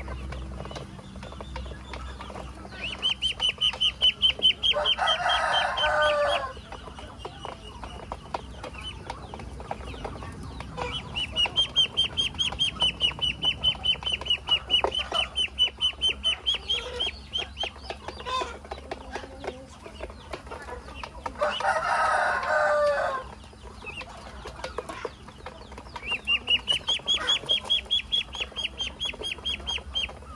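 Muscovy ducklings peeping in runs of quick, high repeated calls, with short clicks of bills pecking grain against a metal basin. Twice, about 5 seconds in and again about 22 seconds in, a louder, lower bird call sounds for a second or so.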